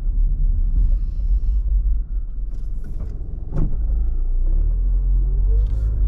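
Car engine and road rumble heard from inside the cabin, deep and steady. There is a single knock about three and a half seconds in, and after that the engine note rises as the car accelerates.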